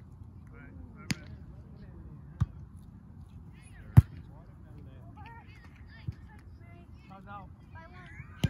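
A volleyball being hit by hand during a rally: four sharp smacks about one and a half to two seconds apart, the third, about four seconds in, the loudest. Voices call out faintly between the hits.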